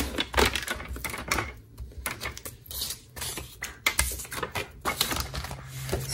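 Paper trimmer in use: its blade carriage sliding and clicking along the plastic rail as it cuts paper, heard as a run of irregular clicks and knocks, with the paper being handled.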